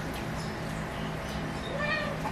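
A domestic cat meows once near the end, a short pitched call, over a steady low hum.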